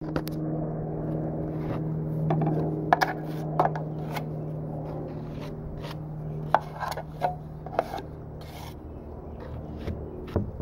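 Metal drywall knife scraping and clicking against a metal mud pan while scooping joint compound, in short scrapes and taps. Under it runs a steady low hum that fades about eight seconds in.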